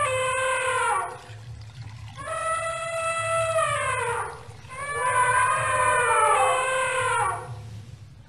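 Young elephant calling: long, high, held calls, three in a row, each sliding down in pitch as it ends.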